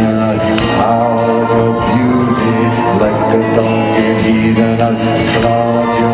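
Live concert music: steady sustained chords with singing voices, running on without a break.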